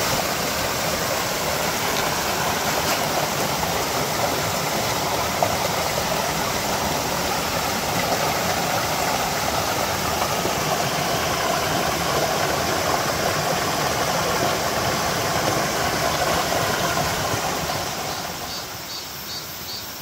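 Mountain stream running over small rocky cascades: a steady rush of water that fades down near the end.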